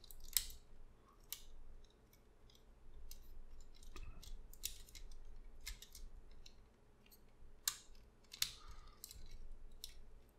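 Plastic parts of a Transformers Masterpiece MP-44 Convoy figure clicking and rubbing as a leg section is folded and collapsed together by hand: faint, irregular clicks.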